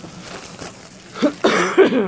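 A woman coughing, loudly, in the second half.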